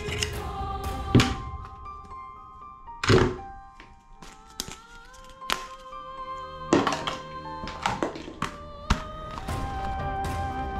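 Plastic toy weapons knocked and set down on a tabletop: a loud thunk about a second in, another about three seconds in, then a scatter of lighter knocks and clicks, over background music with long held notes.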